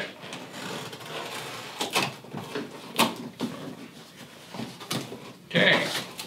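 A knife slitting the packing tape along the top of a large cardboard box, with scraping, then the cardboard flaps pulled open with sharp knocks and rustles.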